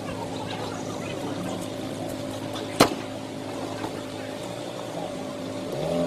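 A vehicle engine runs steadily under faint voices, with one sharp bang about three seconds in.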